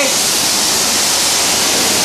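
Steady hiss of water spraying while a car is being washed.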